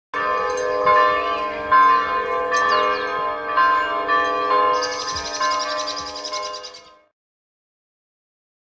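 Bells ringing: a run of strikes about a second apart over long, lingering tones, with a few high chirps. The ringing fades out and stops about seven seconds in.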